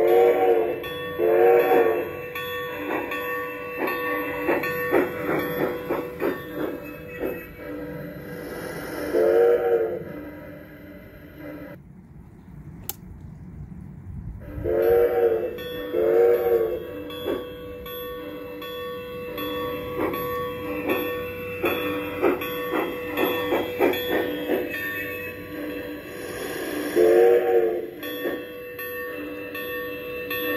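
Built-in sound decoder of a Piko G-scale Camelback model steam locomotive playing its steam sounds through the onboard speaker. It gives short multi-tone whistle blasts (two at the start, one about nine seconds in, two around fifteen seconds, one near the end), with steam hiss and rapid clanking in between. There is a brief lull around twelve to fourteen seconds, broken by a single click.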